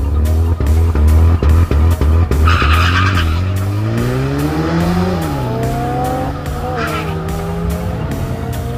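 Drag cars launching off the line: engines held at high revs, then a burst of tyre squeal about two and a half seconds in. The engine note then rises through the gears, drops at a shift about five seconds in and climbs again, with a second short squeal near the end. Music plays underneath.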